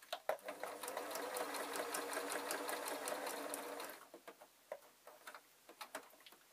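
Electric domestic sewing machine stitching at speed through layered fabric and wadding, a rapid, even run of needle strokes that stops about four seconds in. A few light clicks follow.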